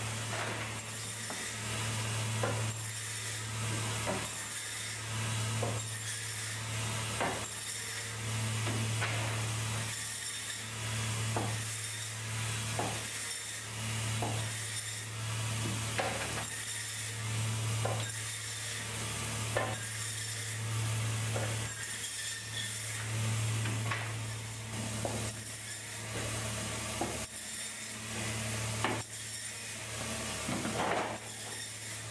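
Braher Medoc table band saw running with a steady motor hum that swells and eases every second or two as it cuts fish. Frequent short clicks and knocks of the fish and cut pieces being handled on the saw table sound over it.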